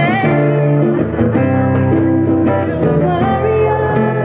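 A woman singing live into a microphone with guitar accompaniment, holding long notes with a pitch slide just after the start.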